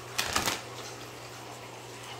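Playing cards being handled, making a quick rustle of two or three short clicks in the first half second, then quiet over a faint steady hum.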